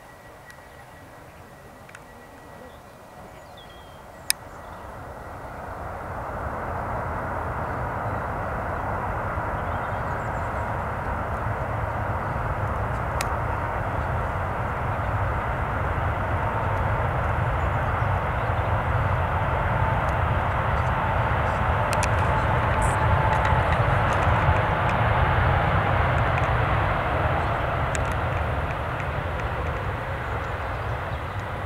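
Airbus A380's four jet engines on its landing roll: after a sharp click about four seconds in, a steady jet roar with a low rumble and a faint whine swells up over a couple of seconds and stays loud, consistent with reverse thrust being applied after touchdown.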